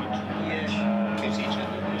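A steady low hum under room noise during a short pause in speech.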